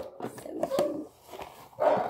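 Hinged metal pencil tin being opened, its lid giving a few sharp clicks and knocks, while a dog barks in the background.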